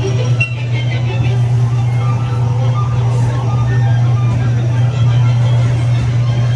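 Caterpillar ride car rolling along its track with a steady low hum, over a background of crowd chatter and park music.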